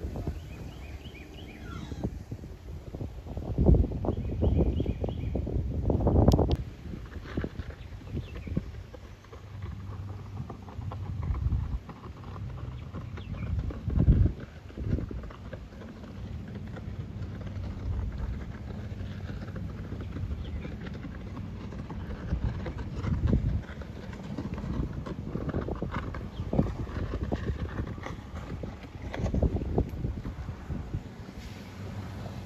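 Wind blowing across the microphone in uneven gusts, loudest about four, six and fourteen seconds in.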